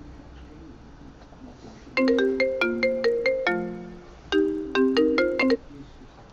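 A phone ringtone: a quick electronic melody of short stepped notes, played through once and then starting again about two seconds later, the second time stopping short before it finishes.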